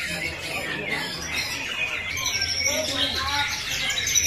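Several caged white-rumped shamas (murai batu) singing at once in a contest: a dense tangle of short whistles and chirps, over the murmur of a crowd.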